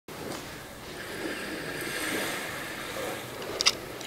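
Steady wash of ocean surf. A short sharp hiss sounds near the end.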